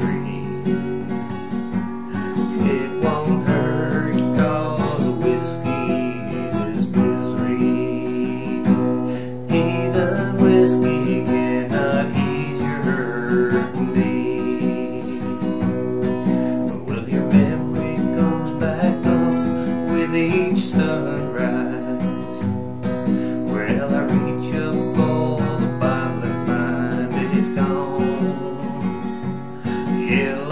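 Steel-string acoustic guitar strummed steadily through the chords of a country song, in a small tiled bathroom.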